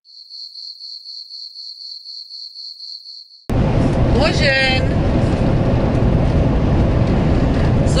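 A high, evenly pulsed chirping, about four pulses a second, for three and a half seconds. It cuts off suddenly into the loud, steady road and engine noise inside the cab of a motorhome on the move, the loudest part.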